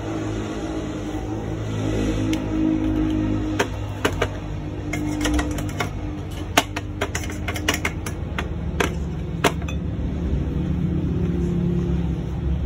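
Fire crackling in a smoking pot: a run of sharp, irregular pops and cracks from about three and a half to nine and a half seconds in, over a steady low hum.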